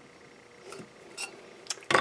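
Light metallic clicks and clinks from a thin sheet-metal stove body being handled while its leg tabs are bent into shape by thumb: a few scattered ticks, then a louder cluster of sharp clicks near the end.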